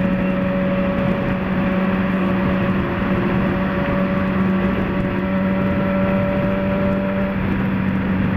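Motorcycle engine running at a steady cruising speed, its pitch held constant, under a haze of wind and road noise.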